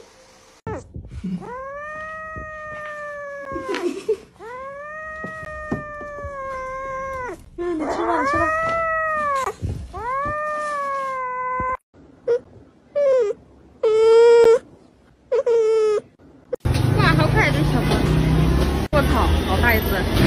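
A cat yowling: three long, drawn-out meows of about three seconds each that rise and then fall in pitch, followed by a run of shorter meows. A loud, noisy stretch of sound takes over for the last few seconds.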